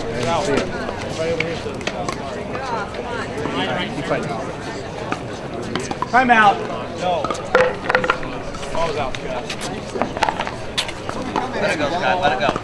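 Voices of people talking around the court, with scattered sharp knocks and pops through it.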